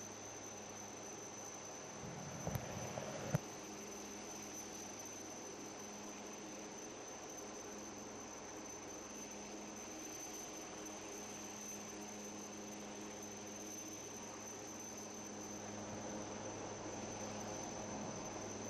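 Faint steady electrical hum with a thin, steady high-pitched whine and light hiss over it. A couple of brief soft knocks about three seconds in.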